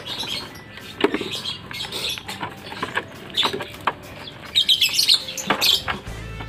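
Lovebirds in a small wire-mesh cage give short, sharp chirps, with a loud cluster of them near the end. Scattered clicks and rattles come from the wire mesh as it is handled.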